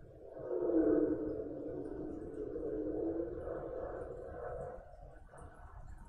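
Military aircraft flying over, heard as a muffled low drone that swells within the first second and slowly fades over the next four seconds.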